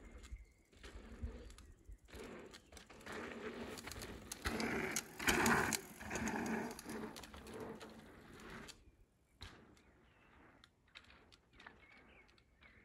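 Mountain bike riding past close by on a dirt and rock trail, its tyres and running gear loudest about halfway through, then cutting off a few seconds later.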